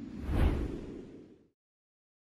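Whoosh sound effect of a logo sting. It swells to a peak about half a second in and fades out within a second and a half.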